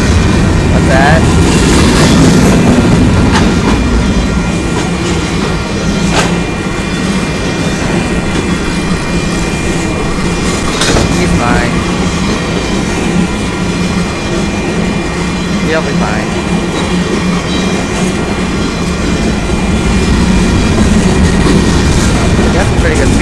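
Freight cars of a Union Pacific train rolling past close by: a steady rumble of steel wheels on the rails, with a few sharp clicks from the wheels over the rail joints.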